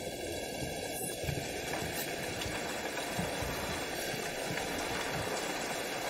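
Steady rain falling: an even, unbroken hiss.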